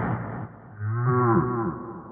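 A man's wordless vocal noise: a breathy rush of air that fades in the first half second, then, after a short gap, a low drawn-out moan of about a second that swoops up and down in pitch.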